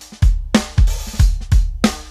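Recorded drum kit playing back, kick and snare hits in a groove, run through a Neve-style channel strip plugin that pushes the preamp and adds EQ and 2:1 compression.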